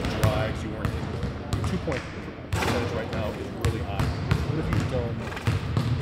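Basketballs bouncing on a hardwood gym court, a string of irregular sharp thuds from several balls, heard under a voice.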